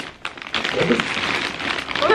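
Plastic shopping bags rustling and crinkling as hands rummage through them.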